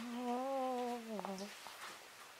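A woman's drawn-out vocal sound: one held note that wavers a little, dips and stops about one and a half seconds in.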